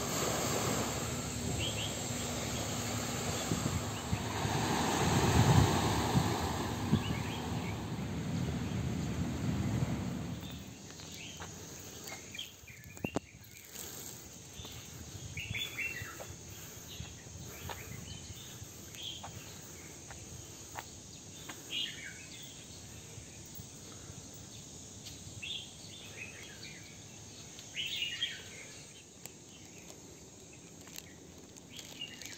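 Rush of small waves on a beach, swelling around five seconds in and fading out about ten seconds in. Then a quieter outdoor hush with scattered short bird chirps and a few faint clicks.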